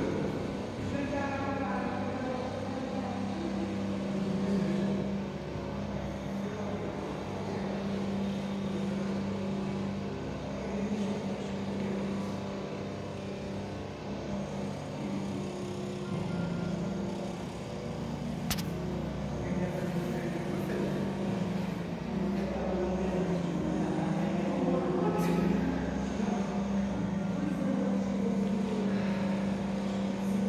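Indistinct voices of people talking over a steady low hum.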